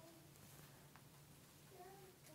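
Near silence: room tone with a faint steady hum. Faint, brief pitched sounds come at the start and again near the end.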